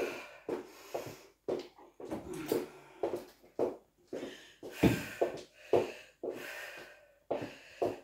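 A woman breathing hard in quick, rhythmic breaths, about two a second, from the exertion of a high-intensity workout, with a soft thud about five seconds in.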